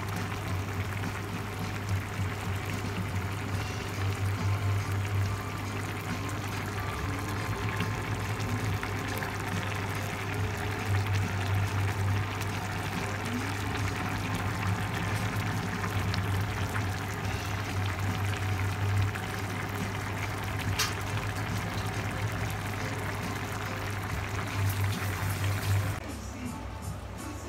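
Chicken paella simmering in a wide enamelled paella pan: the saffron stock bubbles steadily through the rice, chicken and peppers as the rice takes it up, heard close to the pan.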